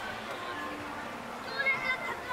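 Background chatter of people's voices, with a loud, high-pitched voice that wavers in pitch near the end.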